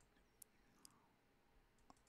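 Near silence with three faint, sharp computer-mouse clicks, spread across about two seconds.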